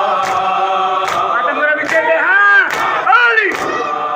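A group of male mourners chanting a nauha in unison while beating their chests in time (matam). The sharp chest slaps land about once every 0.8 seconds. In the middle, a voice rises and falls in two long cries over the chant.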